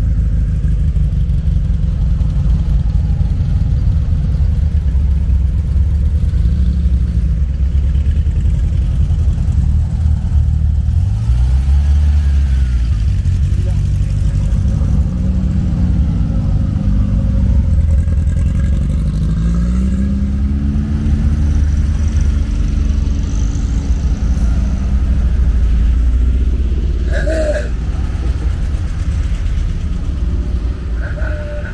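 A line of classic Volkswagen Beetles driving past, their air-cooled flat-four engines rising and falling in pitch as each car goes by, over a steady low traffic rumble. A short sharp sound comes near the end.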